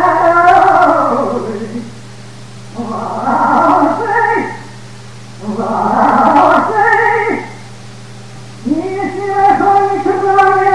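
A male cantor singing liturgical phrases with a wide, wavering vibrato, in sustained phrases of one to two seconds broken by short pauses, over a steady low hum.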